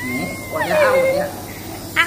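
Toddler crying: one long, high wail that climbs, holds, then falls in pitch, running into further sobbing cries, with a fresh cry breaking out at the end.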